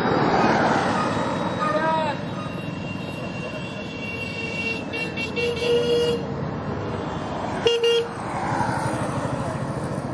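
Motorcycles and road traffic passing close by. Short vehicle horn toots sound about halfway through and again near eight seconds.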